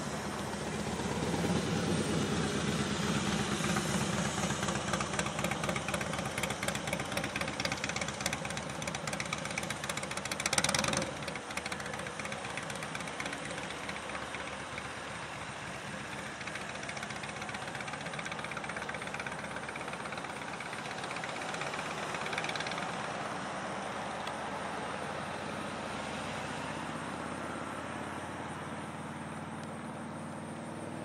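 Vehicle engine running steadily with road traffic noise, louder through the first ten seconds, with a brief loud burst of noise about ten seconds in.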